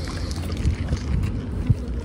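Wind buffeting the microphone: a steady low rumble, with one brief thump near the end.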